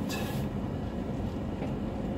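Nissan Hardbody pickup rolling slowly and smoothly over sand, a steady low rumble of engine and running noise heard from inside the cab, with a brief hiss right at the start.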